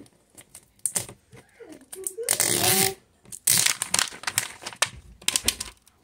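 A crinkly wrapper being torn and peeled by hand off a plastic toy egg: a run of crackles and rustles, with two longer, louder stretches of crinkling, one about two seconds in and one about three and a half seconds in.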